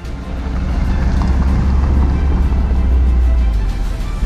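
A car driving on an unpaved dirt road: a steady low rumble of engine and road noise, with background music over it.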